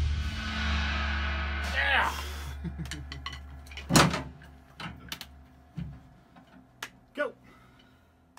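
A full-band punk song stopping dead, with the cymbals and a low amplifier hum dying away over a few seconds. About four seconds in comes one sharp knock as a cymbal is grabbed to choke it, then a few light clicks and taps of sticks and drum hardware, and a short laugh near the end.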